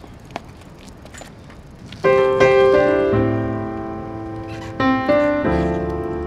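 Piano music: after a couple of seconds of faint background noise with a few small clicks, sustained piano chords come in suddenly, with new chords struck near the end.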